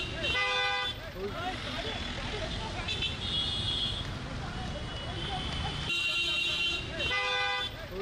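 Vehicle horns honking several times, each honk lasting about half a second to a second, over background voices and traffic noise.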